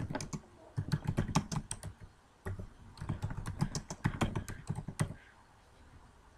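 Typing on a computer keyboard: two runs of quick keystrokes, with a short pause about two seconds in.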